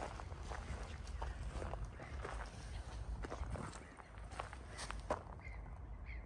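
Footsteps on a gravel driveway, an uneven run of about two steps a second.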